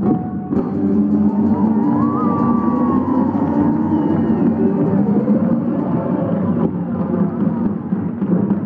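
Live Celtic folk-rock band playing, a line of drums pounding under guitar and steady held notes.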